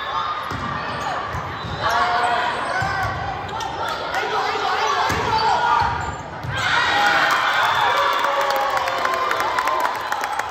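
Volleyball rally in a large gym: the ball is struck and bounces while players and spectators call out over one another, echoing in the hall.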